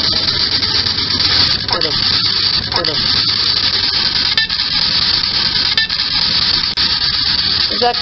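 Spirit box sweeping through radio stations: a steady loud hiss of static broken by a few clicks and two brief clipped fragments of voice, which investigators take as a spirit's one-word reply, "friend".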